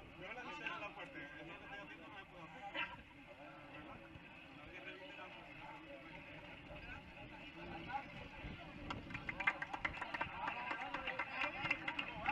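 Indistinct voices of players and people around a football pitch, talking and calling, with a quick run of sharp clicks in the last few seconds.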